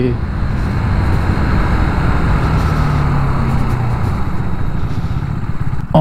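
KTM 200 Duke's single-cylinder engine running at a steady cruise of around 60 km/h, with heavy wind rush on the chest-mounted microphone.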